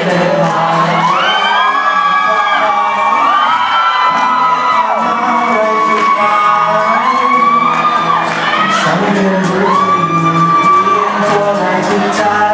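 Live acoustic Hawaiian-style music: guitars strumming steady chords under a lead melody that glides smoothly up and down between long held notes.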